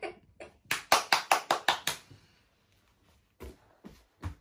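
A quick run of about seven sharp hand slaps, roughly six a second for just over a second, followed near the end by a couple of faint taps.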